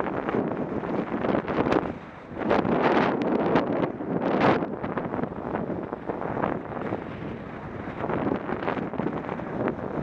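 Wind buffeting the microphone of a camera on a moving bike, in uneven gusts that are heaviest a few seconds in.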